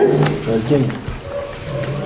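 A man's voice speaking a word, then low, drawn-out vocal sounds through a pause.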